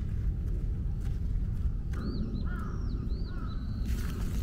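A bird calling outdoors: a quick string of short, arching calls starting about halfway through, over a steady low rumble.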